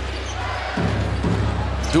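Basketball bouncing on the hardwood court during live play, a couple of dull thuds, over a steady low hum.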